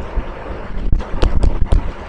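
Four or five light, irregular taps and knocks in the second half, over a steady low hum of room noise.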